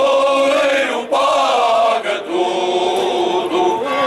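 All-male choir singing Alentejo cante unaccompanied, in long held notes carried by several voices together, with short breaks about one and two seconds in.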